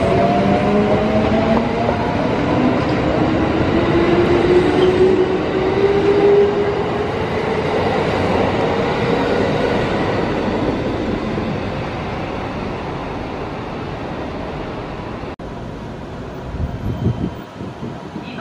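Kintetsu electric train pulling out of the station: a rising whine as it gathers speed over the first several seconds, under the steady noise of the wheels on the rails, which slowly fades as the train draws away. The sound cuts off abruptly near the end.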